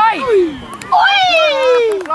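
Two drawn-out shouts from a person's voice, each sliding down in pitch: a short "nej" at the start and a longer falling cry from about a second in.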